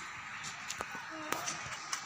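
Faint open-air background hiss with a few scattered sharp clicks and one brief distant voice a little past the middle.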